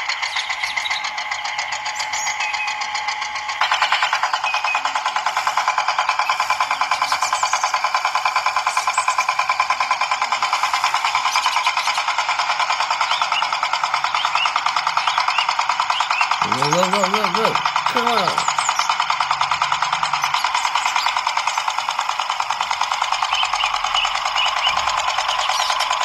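Small electric geared motor of a toy tractor running with a steady whine and a fast, even gear rhythm. It gets louder about three and a half seconds in, as the cultivator tines drag through sand, and a short voice is heard near the middle.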